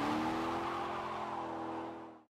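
Logo-sting sound effect of a car engine revving up in pitch and then holding, with a hissing screech over it, fading away near the end.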